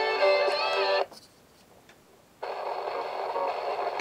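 Small auto-scan FM radio playing a station's music with guitar through its tiny speaker; about a second in the sound cuts out while the radio scans, and after about a second and a half it comes back on a weak station full of static.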